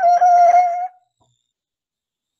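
A single high, steady tone with overtones, held for about a second and then cut off.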